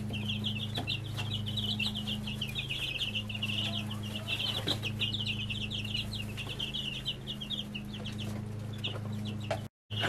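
Brood of ten-day-old chicks peeping, many short high chirps overlapping with no break, over a steady low hum. The sound cuts off abruptly just before the end.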